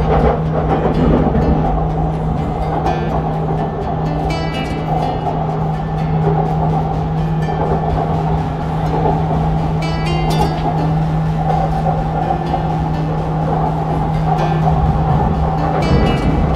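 Purple Line metro train running steadily on its elevated track, a constant low hum over track rumble, with background music that has plucked-string notes laid over it.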